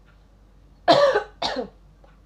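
A person coughing twice, a second apart-ish: a loud first cough about a second in, then a shorter, softer second cough half a second later.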